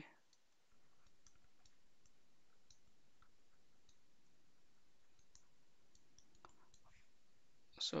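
Near silence with faint, scattered light clicks from a stylus tapping and dragging on a pen tablet while handwriting.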